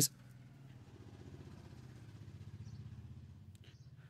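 Faint low rumbling hum, like a distant engine, that swells slightly in the middle and fades near the end.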